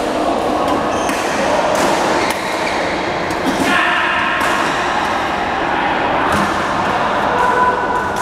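Din of a busy indoor badminton hall: sharp racket strikes on shuttlecocks every second or so over a constant echoing wash of distant voices and play.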